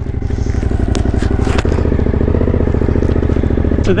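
Suzuki V-Strom motorcycle engine running steadily at low speed, with an even fast pulse and a couple of sharp clicks about a second in.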